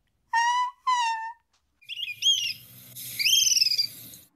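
People imitating the call of a dusky-capped flycatcher with their voices. First come two short high-pitched vocal calls, then higher whistled calls, the last one longer, rising and then falling.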